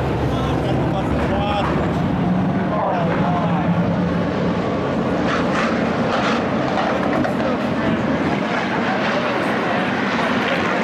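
Hobby stock race car engines running in a steady low drone, with crowd voices chattering over them.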